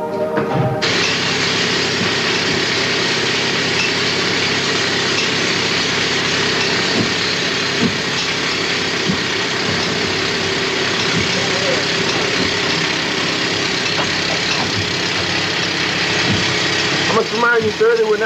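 Loud, steady machine noise: an even rushing sound with a steady hum under it, starting abruptly about a second in. A man's voice comes in near the end.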